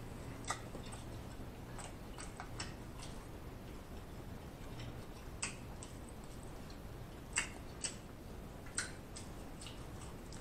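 Mouth sounds of a person eating seafood boil: sparse, irregular wet clicks and lip smacks, about eight across the stretch, over a faint steady hiss.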